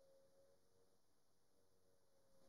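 Near silence, with a very faint steady tone that fades within the first half second.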